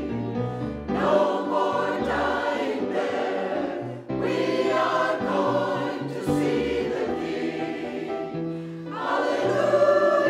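Mixed church choir of men's and women's voices singing an anthem in sustained phrases, with a brief break between phrases about four seconds in.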